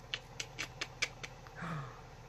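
Six quick, sharp clicks, about four a second, followed near the end by a woman's short exclamation falling in pitch.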